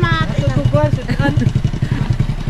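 A vehicle engine idling with a steady low rumble, with people's voices over it.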